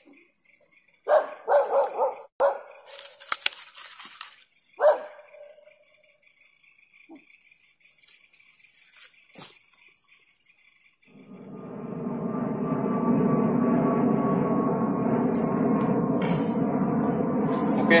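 Short sharp calls: three in quick succession about a second in and one more near five seconds. From about eleven seconds a steady motor drone comes in and keeps going.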